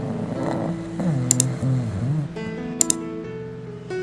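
A sleeping dog making low, wavering whimper-like dream vocalizations from about a second in, over soft background music with plucked and keyboard notes.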